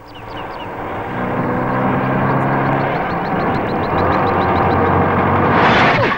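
A Hindustan Ambassador car's engine approaching, growing louder over the first two seconds and then running steadily, with a louder rush near the end as the car pulls up to a stop.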